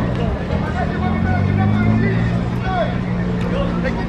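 Peugeot 208 Rally4's turbocharged three-cylinder engine idling steadily, with crowd chatter around it.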